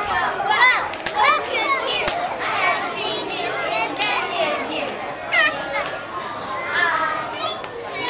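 Young children's voices chattering and calling out, several at once and high-pitched.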